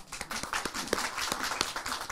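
Audience applauding: many hands clapping in a dense patter that starts suddenly and keeps going.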